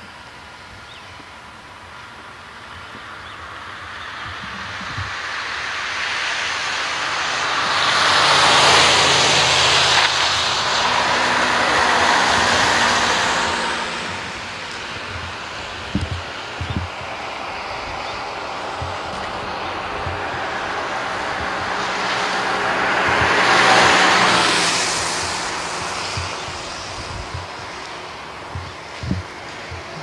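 Two cars passing along a snowy road, the hiss of tyres swelling up and fading away each time, the first about nine seconds in and lasting several seconds, the second about twenty-four seconds in. A few soft thuds fall between them.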